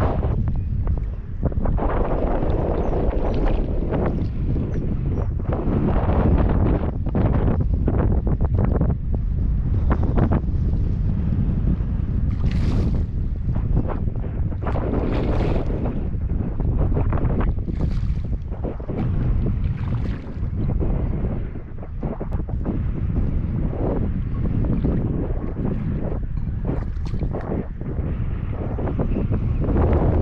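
Strong wind buffeting the microphone: a heavy, gusting rumble over the sound of choppy lake water, with a few brief sharper noises around the middle and near the end.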